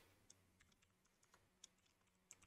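Very faint computer keyboard typing: a few separate soft keystroke clicks, about four in two seconds.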